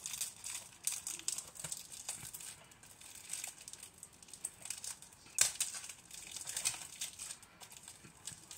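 Plastic shrink-wrap being peeled and crumpled off a Blu-ray case: a run of irregular crackles, with one sharper crack about five and a half seconds in.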